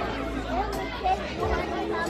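Faint background chatter of guests, with a low steady hum underneath.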